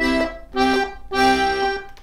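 D/G melodeon (two-row diatonic button accordion) sounding three short held chords, the last the longest, with the left-hand bass and chord buttons pressed together.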